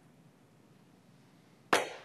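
Quiet room tone, then near the end a single sharp knock close to the lectern microphone that dies away within a fraction of a second.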